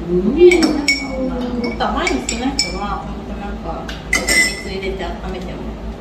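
A small metal spoon clinking against glass cups of milk: a run of sharp, ringing clinks, the loudest about half a second in and again about four seconds in.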